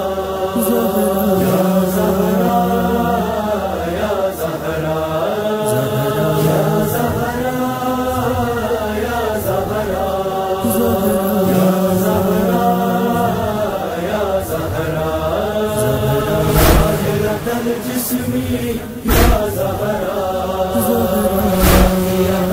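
Male voices chanting a noha, a Shia lament, in slow, long-held notes with gliding pitch. Near the end come three deep thumps about two and a half seconds apart.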